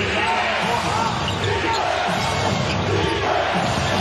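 Live basketball game sound: sneakers squeaking repeatedly on the hardwood court and the ball being dribbled, over the steady noise of an arena crowd.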